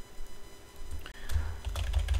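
Computer keyboard keys clicking as a word is typed, the clicks scattered and coming more often in the second half, over a low rumble.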